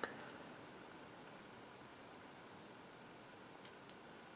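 Near silence: room tone with a faint hiss and a faint, thin, steady high whine. There is a light tick right at the start and another just before the end.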